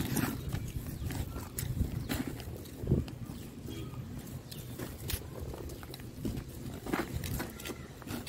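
A small hand trowel scooping and scraping through dry potting soil and leaf litter in a grow bag, in irregular scratchy strokes.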